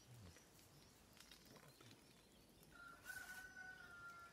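Near silence, then a long animal call with a clear pitch starts near the end and falls slightly as it goes on.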